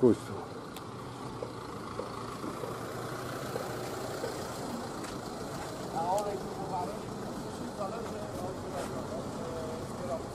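Urban street ambience: a steady low hum of motor traffic, with people's voices talking about six seconds in and again near the end.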